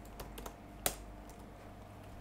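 Keystrokes on a computer keyboard: a few light taps, then one sharper click a little under a second in, over a faint steady hum.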